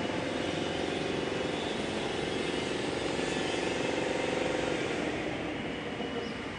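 Engine hum of a motor vehicle passing, over a steady urban background noise. It swells about four seconds in and fades near the end.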